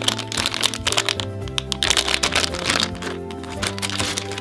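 A shiny foil blind bag being torn open and crumpled by hand, a run of many sharp crinkles, over steady background music.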